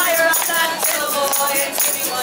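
Live folk song: women singing over a strummed acoustic guitar, with a tambourine jingling in rhythm and hands clapping along.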